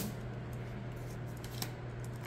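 Faint handling of matte-cardstock oracle cards: a card slid off the top of the deck and laid on another pile, with a soft tap about a second and a half in. A steady low hum runs underneath.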